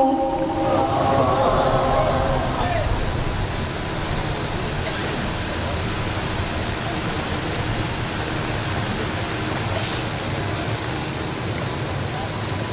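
A recited Quran verse trails off in the first three seconds, then a steady low rumble of background noise carries on with no voice.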